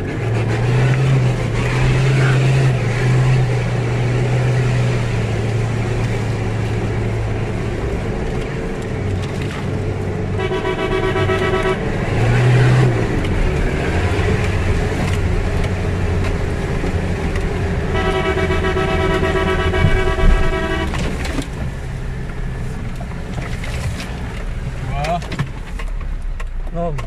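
Toyota Land Cruiser's engine running under load on an off-road course, heard from inside the cabin, its pitch stepping up and down with the throttle. A car horn sounds twice, briefly about ten seconds in and for about three seconds near twenty seconds.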